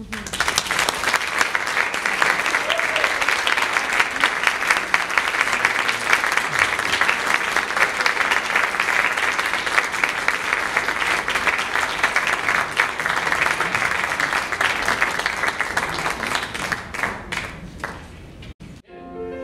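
Audience applauding steadily, thinning out to scattered claps near the end.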